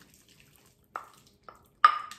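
Spoon mashing avocado in a bowl: soft wet squishing, then three knocks of the spoon against the bowl in the second half, the last one the loudest with a brief ring.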